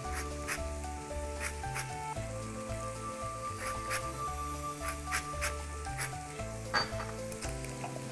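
Background music with a stepping bass line and held notes. Short, scratchy strokes come and go over it, as lemon zest is rasped off on a handheld metal grater.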